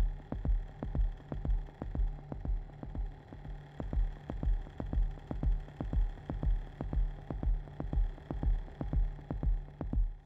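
Suspense film score: a low thudding pulse about twice a second over a steady drone.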